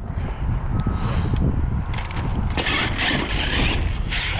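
Arrma Kraton 6S brushless-electric RC monster truck driving on dirt: drivetrain whir and tyres scrabbling, growing louder about two and a half seconds in, over a steady low rumble.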